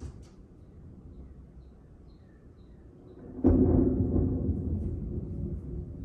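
Thunder: a low rumble that breaks into a loud, sudden clap about three and a half seconds in, then rolls on and slowly fades. A few faint bird chirps come before the clap.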